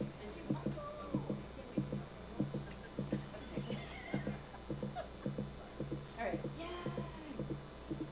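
Soft, evenly paced footsteps, about three knocks a second, with faint murmured voices in the background.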